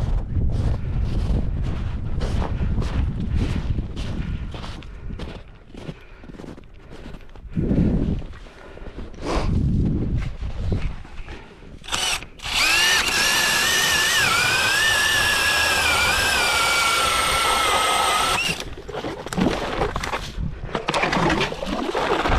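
Footsteps crunching through snow, about two a second, for the first dozen seconds. Then a cordless drill driving an ice auger whines steadily for about six seconds as it bores through the ice, its pitch sagging slightly under load, and stops suddenly.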